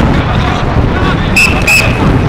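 Football training-ground sound: faint shouts of players over a steady low rumble, with two short, high whistle blasts about a second and a half in.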